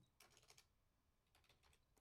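Near silence with faint computer-keyboard keystrokes in two short clusters, one near the start and one in the second half, as frequency values are typed into the software.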